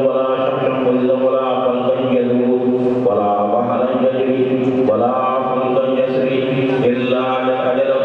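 A man's voice reciting in a slow, melodic chant, holding long pitched phrases with short breaks every two or three seconds.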